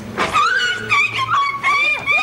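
A sudden sharp sound, then a long high-pitched screech that holds a nearly steady pitch for over a second.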